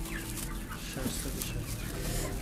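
Caged chickens clucking over a steady low hum.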